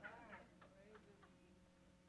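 Near silence: room tone, with a faint voice in the first half second and a few faint ticks.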